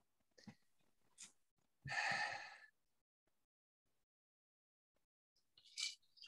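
A person's audible sigh, one breathy exhale lasting under a second about two seconds in, with a short intake of breath near the end; otherwise near silence with a few faint clicks.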